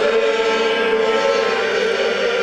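A male folk singing group singing together with an accordion, holding a long, steady note.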